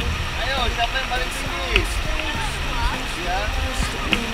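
A fast, shallow river rushing over stones, with children's voices chattering and calling out over it.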